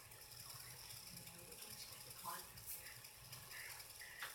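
Near silence: quiet room tone with a few faint, brief sounds, such as a soft murmur and small clicks.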